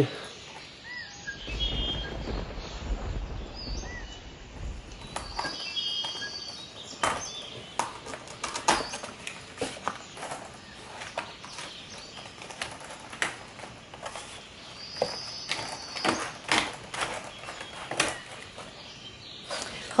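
Irregular clicks, crackles and rustles of hands working on an assemblage of sticks, wire and painted paper, with a dull rumble of handling early on. A few faint, short bird chirps sound in the background.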